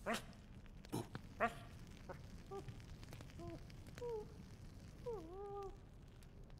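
A dog whimpering: a few short sharp sounds in the first second and a half, then a series of short, thin whines. The longest whine, about five seconds in, dips and then rises in pitch.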